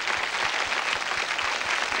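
Studio audience applause: steady, dense clapping from a crowd, with no break.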